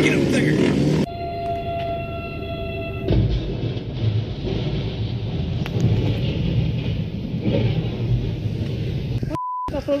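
A steady held tone with overtones for about two seconds, then a low rumble with noise for most of the rest. Near the end comes a short pure beep.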